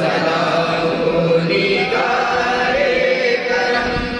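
Several voices chanting together in a slow devotional chant, with long held notes that bend gently in pitch.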